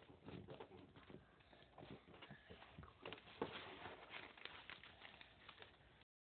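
Faint rustling and crinkling of a sheet of paper being folded and creased by hand, with many small irregular clicks and taps; the loudest comes about halfway through.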